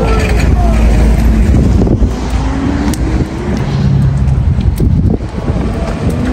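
City street traffic: car engines running and passing over a heavy low rumble, one engine note slowly rising in pitch.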